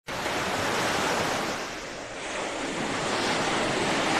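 Ocean surf washing onto a sandy beach, easing off about halfway through and then building again.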